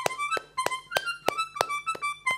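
A miniature garmon (small Russian button accordion) playing a quick dance tune in high notes. Hand claps keep time with it, about three a second.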